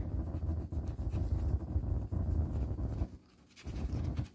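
A quarter scratching the coating off a scratch-off circle on a paper card, in quick rubbing strokes that stop about three seconds in, with one short rub again near the end.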